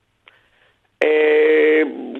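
A man's long, level-pitched hesitation sound 'eh', held for under a second after a silent pause, before he starts to answer.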